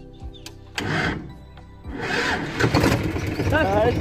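Tractor engine being started: a short burst of cranking about a second in, then the engine catches and runs with a steady low beat from about two seconds in.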